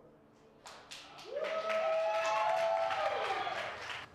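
Small audience applauding as a song ends: a few scattered claps about half a second in, building into steady clapping, with one voice giving a long cheer over it that rises and then falls away.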